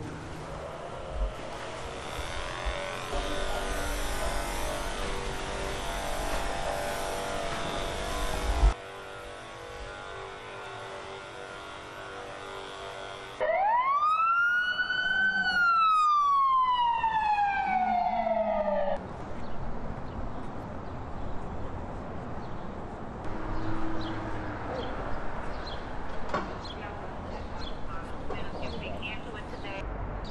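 A steady motor hum from a handheld disinfectant sprayer, then, about halfway through, an ambulance siren: one wail that rises and then falls slowly, the loudest thing here, cut off after about five seconds and followed by street traffic noise.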